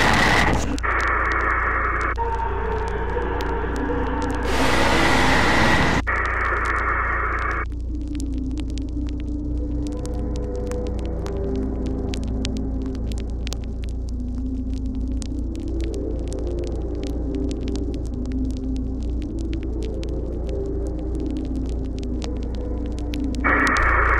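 Harsh bursts of tape static over a steady low electrical hum during the first several seconds. After that comes a softer, eerie wavering drone whose tones slowly drift up and down over the hum, with faint crackle running through it.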